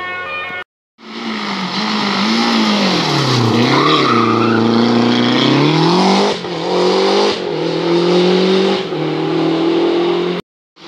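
Historic rally car's engine at racing revs through a hairpin. The engine note drops as it brakes and slows, lowest about three and a half seconds in, then climbs as it accelerates out. Near the end, three quick dips in the note are the upshifts through the gears.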